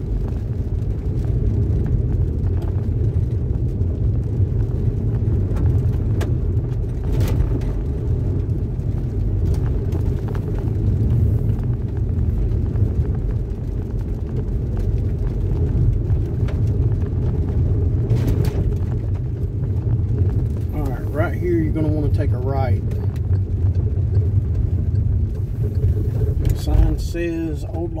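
Inside a car driving on a wet dirt road: a steady low rumble of tyres and road noise, made rough by the car's stiff sports suspension.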